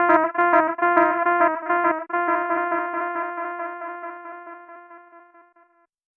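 Closing notes of a minimal electronic track: a single synthesized keyboard note, struck several times in the first two seconds and then left to decay, fading out shortly before the end.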